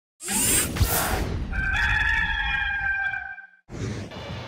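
A burst of whooshing noise, then a single long rooster crow lasting about two seconds that cuts off suddenly.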